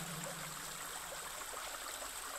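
A faint, steady sound of running water, like a trickling stream.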